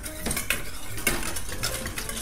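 Metal wire whisk stirring a melted wax-and-oil mixture in a stainless steel bowl, its wires clicking and scraping irregularly against the bowl.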